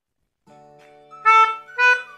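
Pianika (melodica) blown through its flexible mouthpiece tube: faint steady tones begin about half a second in, then two short, loud notes about a second in, the second a little higher than the first.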